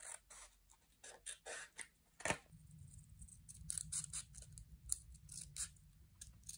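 Scissors cutting paper close to the microphone in a string of short snips as the edge of a sheet is trimmed. One sharper snip comes a little over two seconds in.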